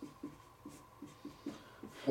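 Marker pen writing on a white board: faint, short quick strokes, about five a second.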